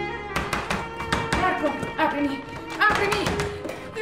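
Film-score strings end abruptly just after the start, giving way to music full of quick sharp taps, with voices over it.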